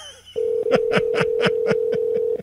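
Telephone ringback tone on an outgoing call: one steady ring about two seconds long, the sign that the called phone is ringing. A man laughs over it in short pulses.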